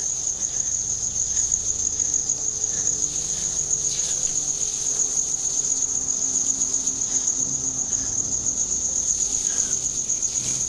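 Crickets chirping at night: a steady, high, rapidly pulsing trill that runs without a break.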